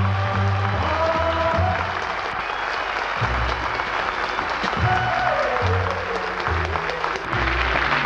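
Sitcom theme music with a moving bass line and melody, with studio audience applause running under it.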